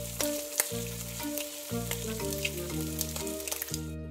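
A frying-egg sizzle sound effect, a crackling hiss with scattered pops, that cuts off suddenly near the end, over children's background music with a steady bass line.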